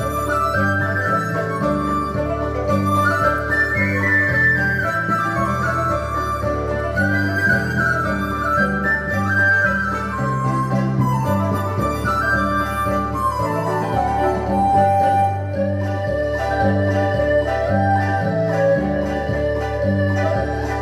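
Chinese traditional ensemble music: a dizi bamboo flute carries the melody, with erhu, pipa and plucked lute, over a steady repeating bass line.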